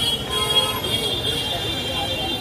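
Busy street-market ambience: background voices of the crowd over traffic noise, with a steady high-pitched tone running throughout.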